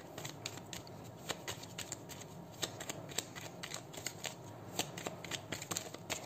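A deck of tarot cards being shuffled by hand: a faint, irregular run of short clicks as the cards slip and tap against each other.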